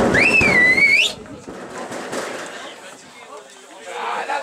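A shrill whistle lasting about a second, its pitch rising, dipping and rising again before it cuts off, followed by quieter open-air background noise.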